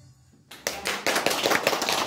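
Audience applause, breaking out about half a second in after a short hush.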